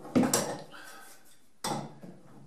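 An adjustable wrench clinking against a brass flare fitting on a gas line while the fitting is being tightened. There are two sharp metallic knocks about a second and a half apart, and the first is the louder.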